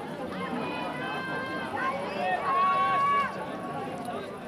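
Voices of trackside spectators calling out to the runners, overlapping, with one loud drawn-out shout about two and a half seconds in that lasts under a second.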